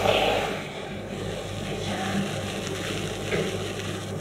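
Fabric rustling and bodies shifting on a floor mattress during a Thai massage stretch, loudest in the first half second, over a steady low room hum.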